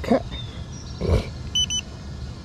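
Two short, high electronic beeps from the drone's remote controller near the end, over a steady low outdoor rumble, with a brief puff of noise about a second in.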